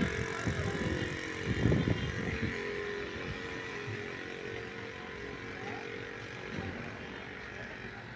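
A vehicle engine running steadily in the street, with faint outdoor background noise; it grows a little quieter towards the end.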